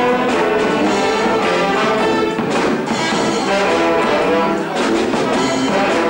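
Brass band music, trombones and trumpets carrying the tune, playing continuously.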